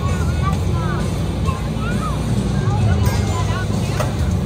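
Steady low diesel rumble of a fire engine running its pump to supply a hose line, with crowd voices and short high chirps over it.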